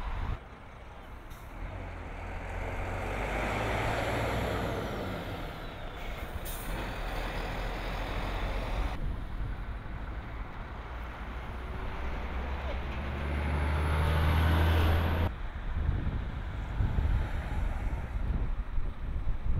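Heavy lorries driving past on the road, their engine and tyre noise swelling and fading twice; the second pass is the loudest, with a deep engine drone that cuts off suddenly about fifteen seconds in.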